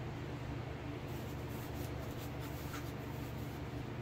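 Steady low room hum, with faint rubbing as foam RC airplane parts are handled.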